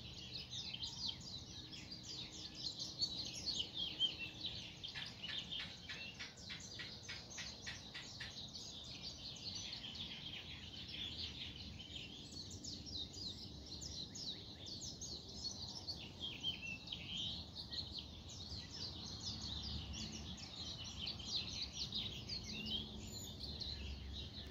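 A dense chorus of many birds chirping and twittering at once, continuous throughout, with a fast rattle of evenly spaced notes a few seconds in.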